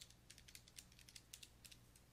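Near silence with a scatter of faint, irregular light clicks, like small key presses, over a low steady hum.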